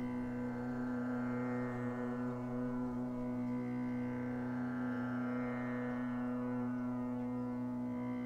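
Music: a steady, sustained drone held on one pitch with many overtones, with no break or change.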